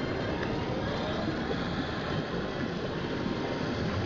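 Steady background din of a casino floor, an even noise with no clear music or voices standing out.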